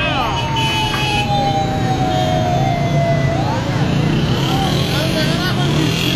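A siren giving one long wail that falls slowly in pitch over about three seconds, over a steady low rumble and voices.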